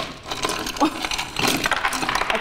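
A metal cup clinking and scraping against a white ceramic bowl in a quick run of clatters as a child stirs a drink with it.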